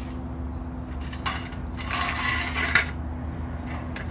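Thin sheet-metal flashing pieces rattling and clinking as they are handled, for about a second and a half in the middle, with a sharper clink near the end of it, over a steady low background hum.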